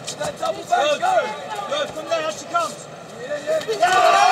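Voices shouting around a boxing ring over arena noise, with a few sharp smacks of boxing gloves landing.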